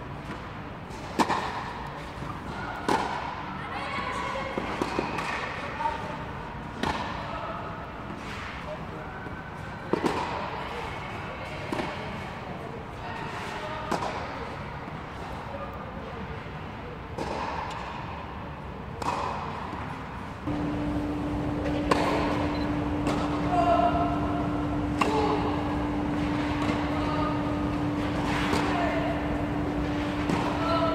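Tennis balls struck by rackets during practice on an indoor court, a sharp hit every second or two, with voices in the background. A steady low hum comes in about two-thirds of the way through.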